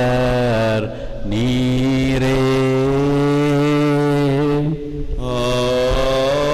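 A priest's voice chanting a prayer through a microphone in long, held notes on a low, steady pitch, breaking off briefly about a second in and again near five seconds.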